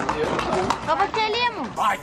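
Mostly voices of people talking at close range, one voice sliding down in pitch in the second half.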